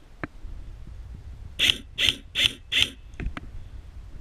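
Airsoft rifle fired four times in quick succession, about two and a half shots a second, with a few light clicks before and after.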